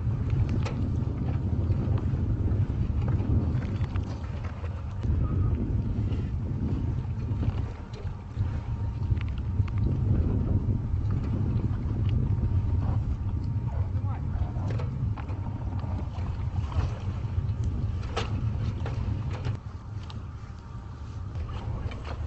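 Steady low rumble of a ship's engine running, with a few sharp knocks and clatter on top.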